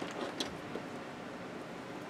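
Steady low room hiss with faint handling of paper under a hand, and a light tap about half a second in.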